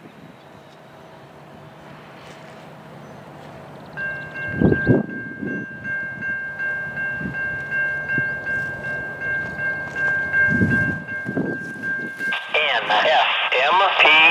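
Railroad grade-crossing bell starts ringing suddenly about four seconds in and keeps up a steady high ring. Underneath it a faint low rumble slowly builds. Near the end a scanner radio comes on with a voice.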